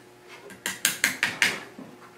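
A quick run of about five sharp metallic clicks over roughly a second, starting about half a second in, from an arc welder's electrode holder and rod being worked against a burnt hard drive.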